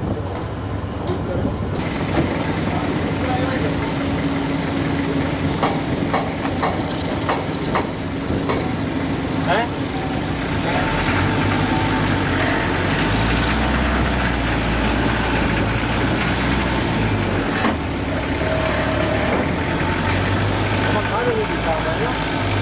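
Land Rover Defender engine idling steadily, with a few knocks in the first half. The engine sound gets heavier and deeper about halfway through.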